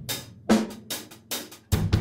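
Recorded music with a drum kit playing a steady beat: kick, snare and hi-hat strikes a bit more than twice a second.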